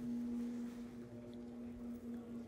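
A steady low hum held at one pitch, over faint room noise.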